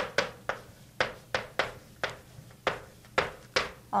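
Chalk writing on a blackboard: a quick run of about a dozen sharp taps, roughly three a second, as each chalk stroke hits and drags across the board.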